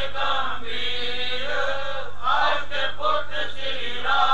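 Several voices chanting a devotional hymn in unison, in long, continuous held notes.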